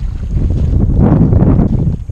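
Wind buffeting the camera microphone on open water, a steady low rumble that swells into a louder gust about a second in.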